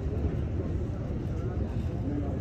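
Steady low rumble of background noise with faint voices of people talking in the distance.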